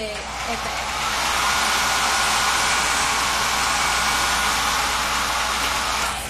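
Handheld hair dryer blowing steadily, building up over the first second and switching off at the end, with a faint steady whine over its rushing air.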